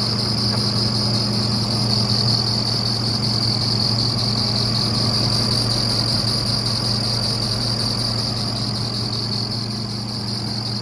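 Tigercat 630E skidder's diesel engine idling steadily, heard close up at the open engine bay, with a steady high whine over the low hum.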